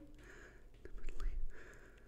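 A person's voice murmuring faintly, low and whispery, for under a second about a second in, in an otherwise quiet pause.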